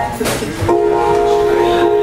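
A held keyboard chord starts about two-thirds of a second in and rings on steadily, opening a song after a spoken remark.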